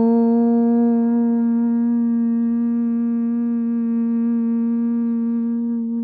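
A woman humming one long note at a steady pitch, a single held exhalation of yoga chanting breath-work.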